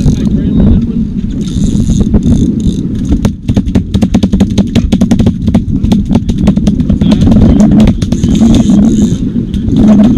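A loud, steady low rumble aboard a small aluminium fishing boat, with many sharp clicks and knocks from about three and a half seconds in as rods and reels are worked.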